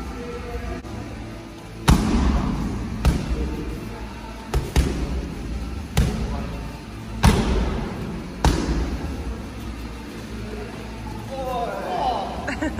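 Strikes landing on Muay Thai pads held by a coach: about seven sharp slaps at uneven intervals, two of them in quick succession near the middle, over steady gym room noise.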